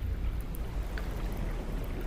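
A steady low rumble of moving water, with a faint click about a second in.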